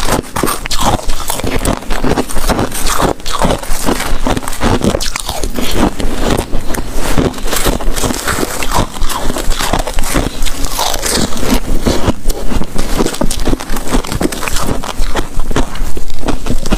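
Close-miked crunching and chewing of freezer-frost ice in the mouth: a dense, unbroken run of crisp crunches.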